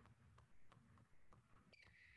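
Near silence with very faint, regular taps about three a second: basketballs being dribbled.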